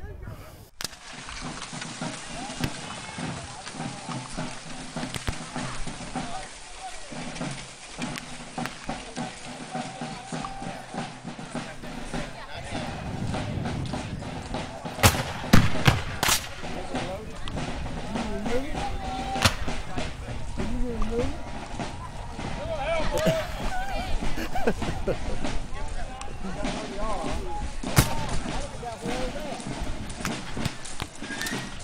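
Scattered black-powder gunfire: a few sharp shots, the loudest about halfway through and another near the end, over a steady background of people talking.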